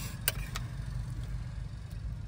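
A steel ladle clinks twice against the steel serving plate and kadai in the first second as egg curry is served, over a steady low rumble.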